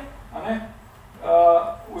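Speech only: a man speaking Slovenian in two short phrases, with a pause between them.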